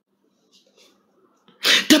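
A quiet pause, then about one and a half seconds in, a man's voice breaks in with a sudden loud, breathy outburst that runs straight into speech.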